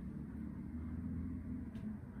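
Steady low rumble of distant road traffic, with a faint low hum and no clear separate events.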